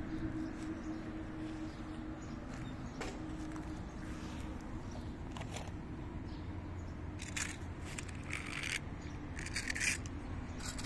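Faint steady outdoor background, with a few light ticks and, in the last few seconds, short bursts of rustling and scraping as a small toy car is picked up off a rock.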